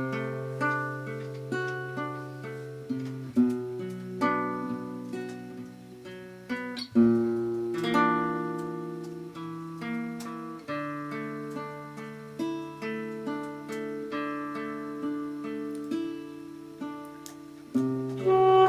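Acoustic classical guitar played alone, single notes and chords plucked and left to ring and die away, with a strong fresh chord about seven seconds in.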